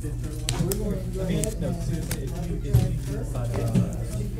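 Background chatter of several voices in a small room over a steady low hum, with a few sharp clicks of playing cards being handled and set down.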